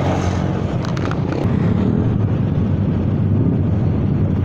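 Several scooter and motorcycle engines running at low revs in a group of riders, a steady low engine hum, with a few faint clicks in the first second or so.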